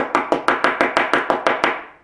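Brass hair stacker tapped down over and over in a quick, even rhythm, about seven taps a second, settling a bunch of deer hair so the tips line up for a fly's tail. The tapping stops shortly before the end.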